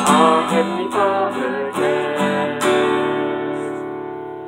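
Acoustic guitar strummed under two voices singing the final line of a song. A last chord rings and fades away over the last second or so.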